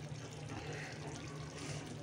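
Gravy simmering in a steel kadai on a lit gas burner: a quiet, steady hiss over a faint low hum, with soft faint sounds as paneer cubes are set into it.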